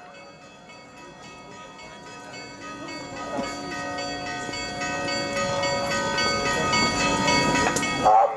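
Bells ringing, a dense cluster of sustained, overlapping tones that swell steadily louder. A growing murmur of noise builds under them in the second half.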